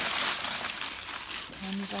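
Crinkly rustling with faint crackles, steady for about a second and a half; a woman's drawn-out voice starts near the end.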